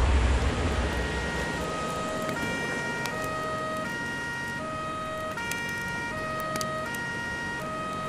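A deep explosion boom rumbles and fades over the first second or so. A two-tone emergency siren follows, alternating high and low notes about every three-quarters of a second.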